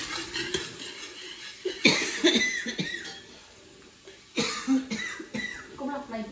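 A person coughing in two bouts about two and a half seconds apart, with light clatter of kitchen utensils between them.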